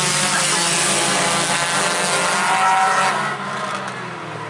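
A pack of Outlaw-class stock cars racing past at close range, their engines running hard together at full throttle. The sound drops off about three seconds in as the pack moves away down the track.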